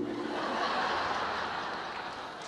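Audience laughing at a stand-up comedian's joke, the laughter slowly dying away.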